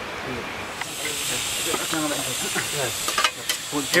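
A steady hiss from a two-burner propane camp stove, starting about a second in, with faint voices behind it.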